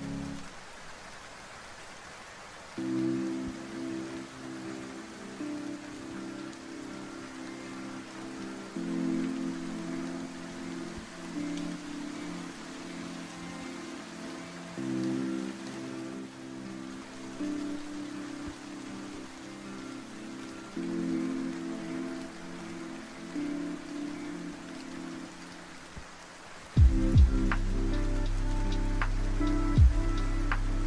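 Steady rain sound under chill lofi music: soft, sustained chords drifting between changes. About 27 seconds in, a louder beat with deep bass and crisp drum hits comes in.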